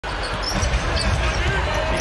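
Basketball dribbled on a hardwood court, a run of low thuds over the steady noise of an arena crowd.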